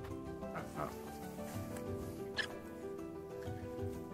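Background music with a steady tune, over which a Finnish Spitz gives short, high whines, once about half a second in and again about two and a half seconds in, begging for a treat.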